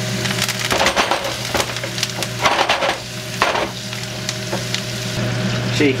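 Potatoes and garlic frying in hot oil in a pan, with several loud crackles and spits as fresh rosemary and thyme sprigs go into the hot fat.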